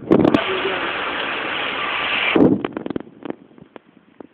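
A sudden, loud, steady hiss over the barbecue fire lasting about two and a half seconds and cutting off abruptly. A run of small crackles and pops follows.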